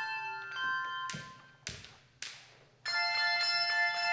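Handbell choir ringing: sustained bell tones fade away, two sharp strikes sound about a second apart in the lull, and about three seconds in a full chord of many handbells rings out together.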